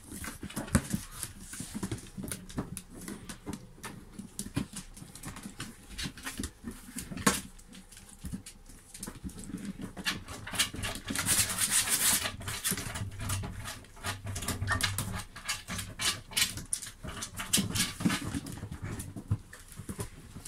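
A puppy playing with a cardboard box and a plush toy on a tile floor: irregular scrapes, taps and cardboard rustling, with small sounds from the dog itself. A burst of rustling comes about halfway through.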